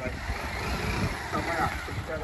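Motorcycle engine running at idle, with voices in the background.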